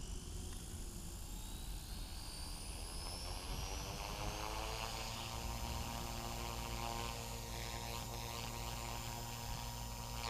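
Align T-REX 450L Dominator RC helicopter spooling up, its KDE450FX brushless electric motor and rotor whining. The whine rises in pitch for the first four or so seconds, then holds steady as the iKON flybarless unit's governor holds the head speed.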